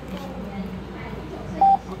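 Contactless fare-card reader giving one short, steady electronic beep near the end as a transit card is tapped on it, the sign that the card was read and the 5 NT fare deducted.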